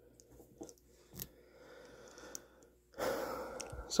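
Faint handling noise of a hand on the phone and small plastic bags: light clicks and rustles, then a louder breathy rush lasting about a second near the end.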